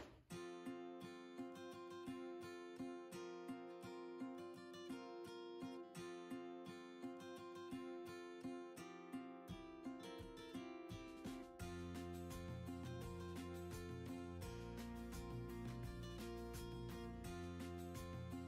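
Quiet background music: plucked guitar notes in a steady rhythm over held tones, with a low bass part coming in about halfway through.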